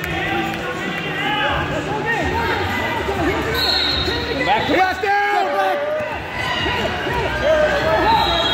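Many voices shouting and calling out at once, from coaches and spectators around the wrestling mats in a large hall.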